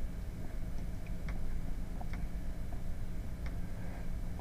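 A steady low hum of room and recording noise, with about five faint, scattered clicks over the four seconds.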